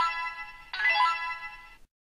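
Electronic chime from a TempIR upper-arm blood pressure monitor's built-in speaker: a short two-note jingle, the second note longer, played as the reading is shown and ahead of the talking readout.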